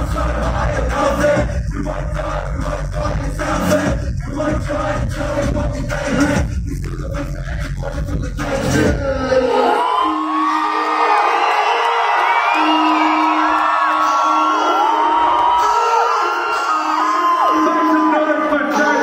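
Hip hop track played loud through a concert PA, with a heavy bass beat. About nine seconds in, the beat cuts out and a crowd cheers and whoops over a low held note that comes and goes.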